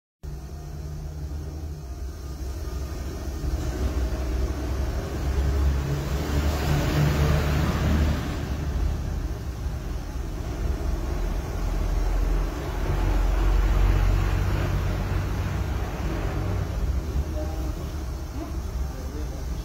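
Motor vehicles passing: a low rumble with two swells that rise and fade, the first brighter, the second deeper and heavier.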